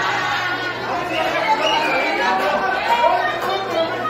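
Many voices of the arena crowd and wrestlers talking and calling out at once, with a steady low hum underneath.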